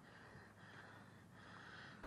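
Near silence: a faint, steady background hiss with no distinct sound.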